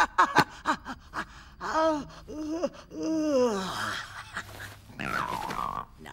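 Cartoon old woman's grumbling vocal noises: a few quick clicks, then several short grunts and groans that rise and fall in pitch, the last one falling away, and a raspy cry near the end.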